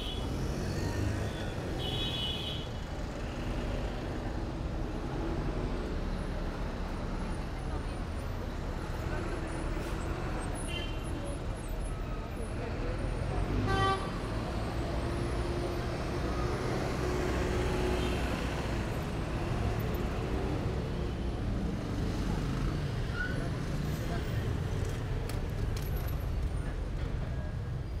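City street traffic: cars, buses and motorbikes running and passing, with a steady rumble throughout and a brief pitched sound, like a horn, about halfway through.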